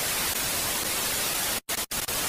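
Television static hiss, a steady even noise, cutting out briefly twice near the end.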